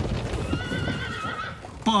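A horse whinnying once, a wavering high call about a second long, over a low rumble.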